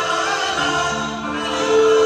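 Music: a choir singing long held notes in harmony.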